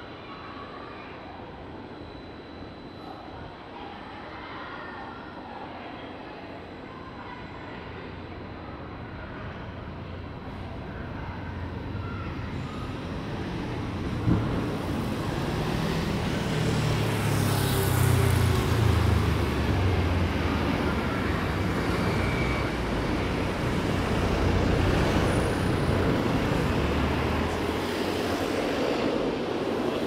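City street traffic, cars passing steadily. The noise builds about halfway through, and a large vehicle's low engine rumble dominates as a bus passes close by.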